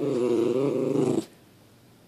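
Schnauzer whining: one drawn-out, wavering vocal grumble about a second long that stops abruptly. It is the dog's protest at her owner leaving for work.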